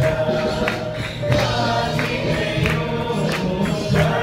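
Group of voices singing a gospel song over a steady percussive beat, about three beats a second.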